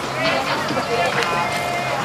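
Mixed chatter of children's and adults' voices from a street crowd, with no single voice standing out, over a steady low hum.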